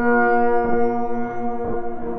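Generative synthesizer drone from a VCV Rack modular patch built on detuned feedback delay: a steady chord of held, horn-like tones, with a faint high tone slowly rising above it and a short swept blip about once a second.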